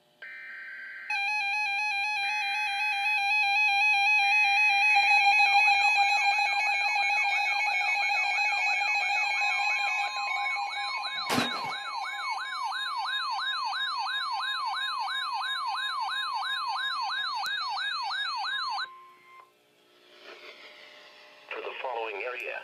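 NOAA Weather Radio Emergency Alert System alert starting. Three short bursts of data tones (the SAME header) are joined by the warbling and sweeping alarm tones of two weather radios set off by the warning, and then by a steady attention tone about ten seconds in. All the tones stop together a few seconds before the end, with a single sharp click about halfway through.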